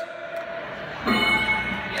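Game-show answer-reveal bell sound effect played over the hall's speakers, a bell-like tone starting about a second in and ringing steadily: the signal that the answer is on the survey board.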